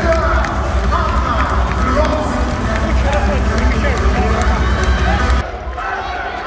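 Arena public-address sound: bass-heavy music with a voice over it, ringing through the hall above the crowd noise. A little past five seconds in, the music cuts off suddenly, leaving quieter crowd noise.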